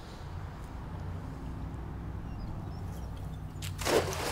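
A cast net's weighted edge slapping down onto the water near the end: one brief, loud splash. A low, steady rumble sits underneath throughout.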